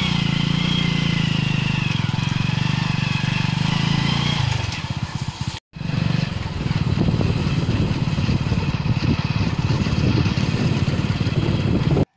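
Motorbike engine running steadily while riding, with a low hum. The sound drops out for a moment about halfway through, after which heavy wind rumbles on the microphone over the engine.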